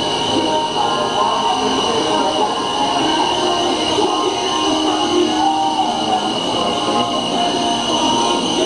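Paint booth machinery running: a steady mechanical drone with a constant high-pitched whine over it.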